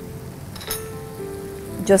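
Soft background music with steady held notes over a faint sizzle from the pan of squid in masala, with a short click about two-thirds of a second in.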